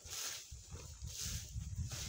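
Footsteps crunching through dry leaf litter, with a low rumble underneath as a wheelbarrow is pushed along.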